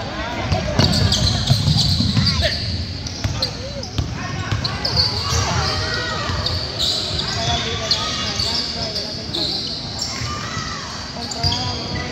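Basketball game in a gym: the ball bouncing on the court, sneakers squeaking, and many spectators talking and calling out, echoing in the large hall.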